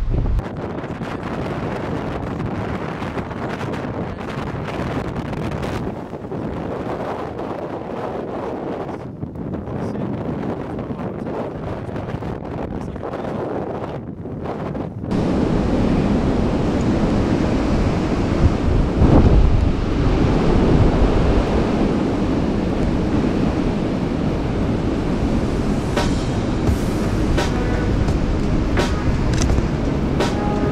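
Wind buffeting the microphone in a steady low rumble, louder from about halfway through, with a few faint clicks near the end.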